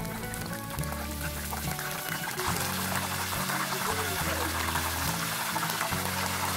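Batter-coated eggplant sticks sizzling in a pot of hot oil, a steady hiss, under soft background music with sustained notes.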